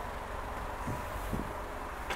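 Quiet, steady low rumble of outdoor background noise, with two faint soft thuds about a second in.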